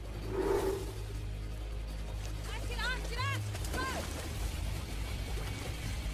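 Dramatic score with a steady low drone under a reenacted hippo attack, and a woman's few short, high-pitched screams about three seconds in.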